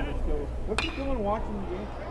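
A metal baseball bat hits a pitched ball once, a sharp ringing ping about a second in, sending a ground ball into play. Crowd voices chatter over a low, steady stadium hum.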